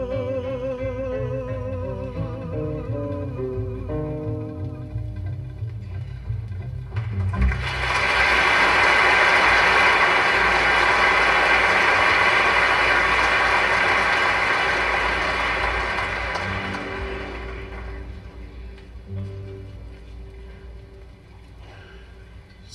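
A live concert recording playing from a mono LP through loudspeakers. A song ends on a held, wavering sung note over guitar, then audience applause swells for about ten seconds and fades away, leaving a few quiet guitar notes.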